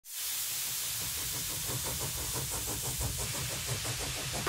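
Steady hiss of escaping steam, with a faint, fast, regular pulsing underneath it.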